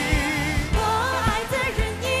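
A Chinese pop ballad sung by a male singer with band accompaniment. He holds a note with wide vibrato, then moves into a new phrase, over a steady bass line and a regular drum beat.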